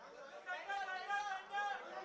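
Indistinct chatter of voices, off microphone, with the talk becoming clearer and louder from about half a second in.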